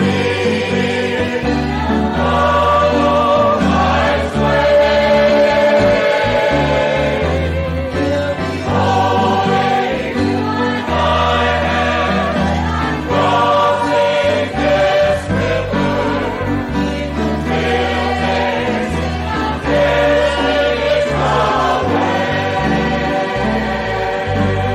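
A group of voices singing a gospel song over sustained low bass notes that change every second or two.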